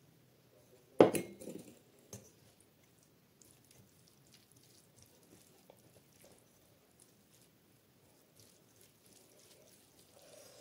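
A small steel bowl set down with one loud metallic clank about a second in, and a lighter click soon after. Then fingers mix rice and mushroom curry on a steel plate with faint, soft squishing.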